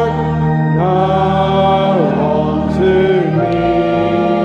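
Congregation singing a slow hymn in long held notes that glide from one pitch to the next, over a steady low accompanying tone.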